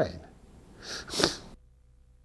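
A single short, breathy burst from a man's nose or mouth about a second in, then the sound cuts off suddenly to near silence with a faint hum.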